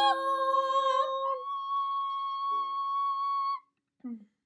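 Two layered women's voices sustaining the final sung notes over a last ringing ukulele chord. The lower voice and the chord die away about a second and a half in, and the high note is held steadily until it stops shortly before the end.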